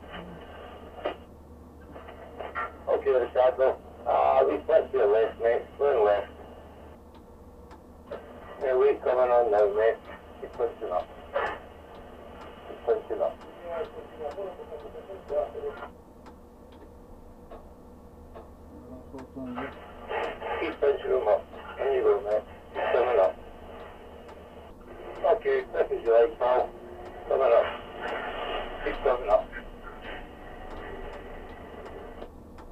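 Two-way radio voice traffic in the crane cab: a man's voice comes through the radio's small speaker in bursts, thin and hissy, as the radio opens and closes between transmissions.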